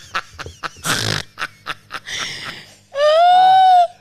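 A man laughing hard in quick, breathless pulses. About three seconds in comes a loud, high-pitched squeal of laughter lasting almost a second.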